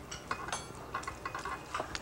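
Faint, scattered clinks of spoons and knives against serving bowls and plates as food is dished up at a table.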